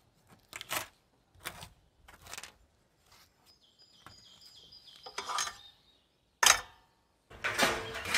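Brief rubbing strokes of a gloved finger smearing silicone sealant over a rusty hole in a corrugated metal roof sheet, with a bird chirping faintly partway through. About six and a half seconds in comes one sharp knock. Near the end there is a louder rattle of a corrugated roofing sheet being handled.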